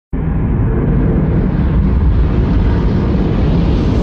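A deep, loud rumble cuts in abruptly and holds steady, with a hiss slowly building over it. It is a film trailer's sound effect for an object tearing through Earth's atmosphere.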